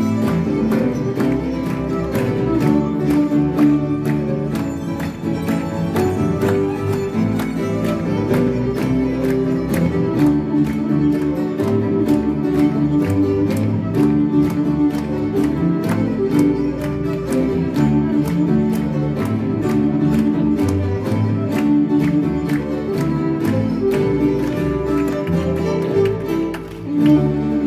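Live instrumental music from a small acoustic ensemble of violin, acoustic guitar, double bass and grand piano. The bowed violin is the most prominent voice over a steady, evenly pulsed accompaniment.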